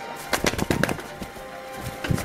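White pigeon beating its wings in a quick flurry of flaps about a third of a second in, with another flurry starting near the end.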